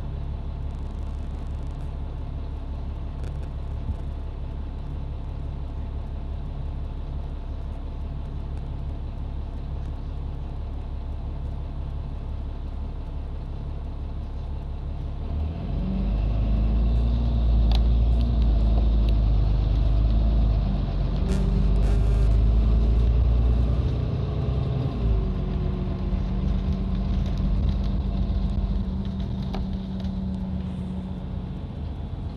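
Bus engine idling steadily, heard from inside the cabin. About halfway through it gets louder and revs up as the bus pulls away, its pitch rising and shifting for several seconds before it settles into a steadier cruise.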